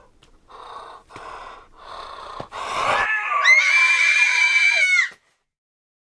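Three short, rasping, wheezing breaths, then a loud, high-pitched scream lasting about two seconds that cuts off abruptly.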